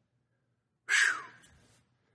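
A man's short, harsh, breathy exhale starting suddenly about a second in and falling in pitch as it fades.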